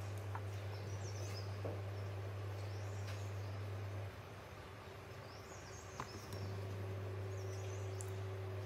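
A steady low hum that drops away for about two seconds midway, with faint high bird chirps a few times and a few small clicks.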